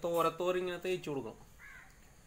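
A person's voice making a run of drawn-out, pitched vocal sounds for about the first second and a half, then stopping.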